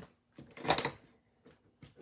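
Card stock and paper being handled and set down on a tabletop: one brief rustle about three-quarters of a second in, with a few faint clicks around it.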